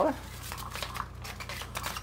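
Cat's Meow electronic cat toy running: its motorized wand sweeping around under the nylon cover, making an irregular rustling and ticking against the fabric.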